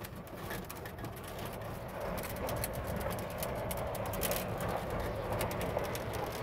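Golf cart being driven over rough farm ground: a steady running hum with frequent small rattles and knocks.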